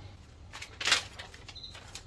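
A short rustle of packaging being handled, about a second in.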